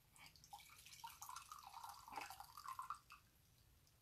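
Faint, quick, irregular light clicks and rustling from something being handled by hand, lasting about three seconds.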